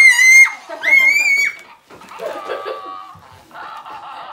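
Two loud, high-pitched shrieks from a child, the first at the start and the second about a second in, followed by a quieter, lower fart noise from a Grumblies interactive plush monster toy whose button has been pressed.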